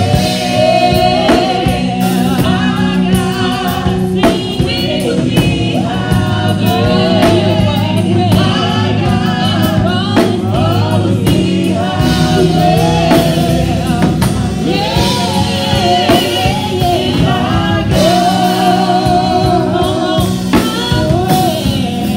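Live gospel praise singing: several voices singing together into microphones over instrumental backing with drums, loud and continuous.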